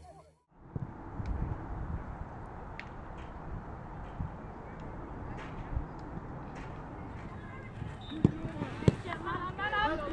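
Outdoor training-pitch ambience with wind rumbling on the microphone and scattered thuds of footballs being kicked. Two sharp kicks stand out about eight and nine seconds in, followed by players' voices calling out. A brief dropout just after the start marks an edit cut.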